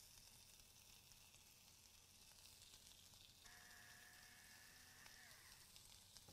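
Faint sizzling of diced pork belly searing in a hot Korean stone bowl. A faint steady whine joins it a little past the middle for under two seconds and dips in pitch as it fades.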